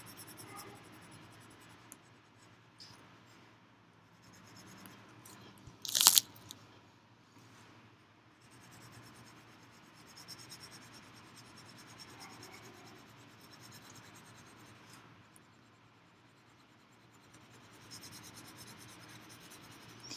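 Coloured pencil shading on paper: a faint, uneven scratching that comes and goes in spells of strokes. About six seconds in there is one loud, sharp knock.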